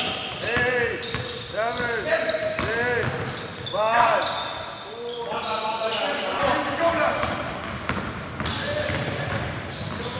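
Basketball game sounds: sneakers squeaking on the court in a run of short rising-and-falling chirps, and the ball bouncing off the floor in sharp thuds, echoing in the hall.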